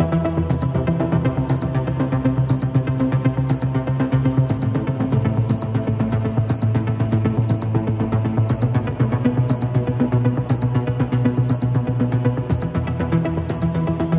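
Electronic countdown music for a TV newscast: held low bass notes and synth tones under a short high tick once a second, counting off the seconds to the top of the hour.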